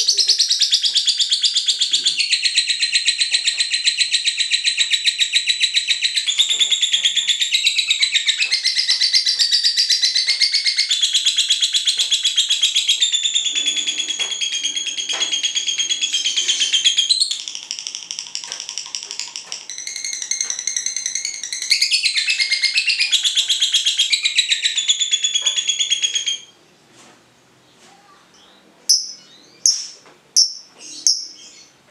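A lovebird singing its 'ngekek': one long, unbroken, rapid high chattering trill that runs for about 26 seconds. It softens for a few seconds about two-thirds of the way through, then stops abruptly, leaving only a few short chirps near the end.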